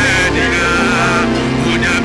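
Male gospel singer singing a wavering, melismatic line over live worship music with sustained chords and a steady bass underneath.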